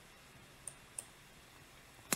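Two faint computer mouse clicks about a third of a second apart, against near silence.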